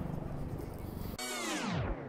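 Faint outdoor background noise, then about a second in an electronic transition sound effect: several tones sweeping steeply down in pitch together, fading out as they fall.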